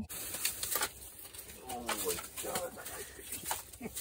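A freshly landed trout flopping on bare ice, a few sharp slaps in the first second, with low, quiet voice sounds about halfway through.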